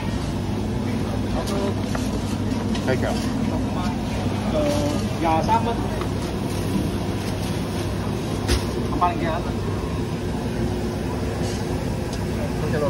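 Busy street-market ambience: a steady low rumble of machinery or traffic under scattered background voices.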